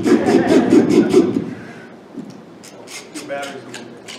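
A man laughing for about a second in quick pulses, then quieter short sounds and a brief murmured voice near the end.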